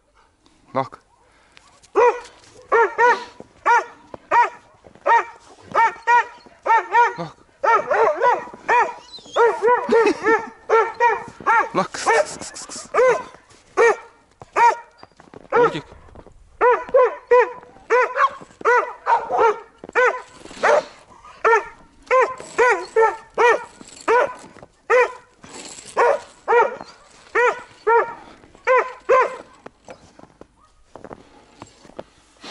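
A dog barking over and over in fast, high-pitched yaps, a few a second, in long runs broken by short pauses about a second in and around the middle.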